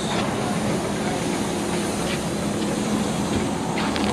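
A steady machine hum with a constant low drone and background noise, and a faint click or two.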